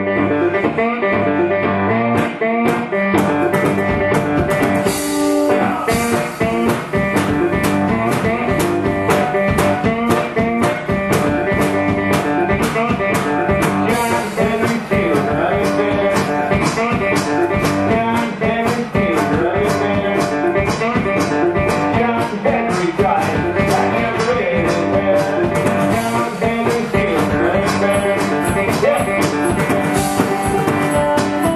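Live blues band: guitar playing a repeating riff, with the drum kit and cymbals coming in about two seconds in and keeping a steady driving beat.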